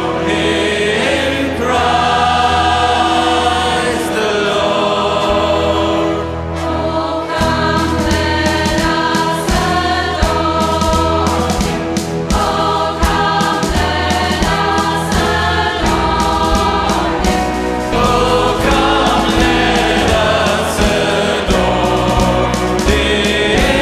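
Mixed choir singing a gospel-style Christmas song with a live pop band of drums, acoustic guitar, bass guitar and keyboards. A steady drum beat comes in about six seconds in.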